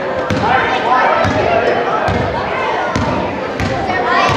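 Voices of children and spectators echoing in a gymnasium, with a basketball bouncing on the hardwood floor about five times, roughly once a second.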